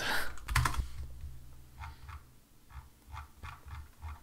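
Typing on a computer keyboard: a run of separate keystrokes, mostly in the second half.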